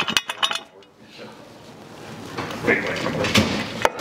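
Metal hardware clinking and scraping as a stainless-steel door-hinge step, its spacers and washers are handled and fitted onto the door hinge, with a couple of sharp clicks near the end.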